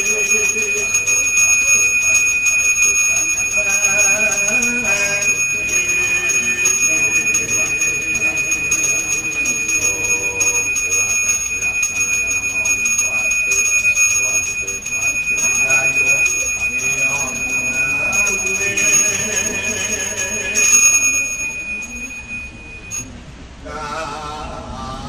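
A priest's ritual hand bell rung continuously, a steady unbroken ringing that stops about a second before the end, with a man's voice chanting underneath.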